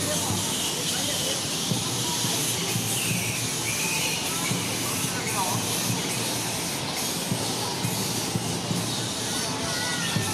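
Steady din from a roosting colony of large flying foxes, many bats calling and squabbling at once, with a few brief squeaky chirps standing out.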